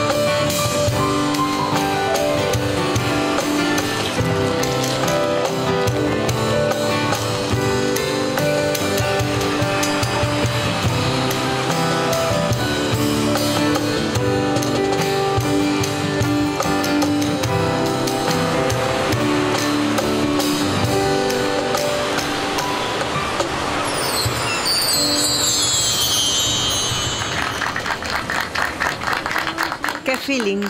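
Live band playing an instrumental passage: electroacoustic guitar, bass guitar, synthesizer and percussion together with a steady beat. Near the end a high sweep glides downward over the music.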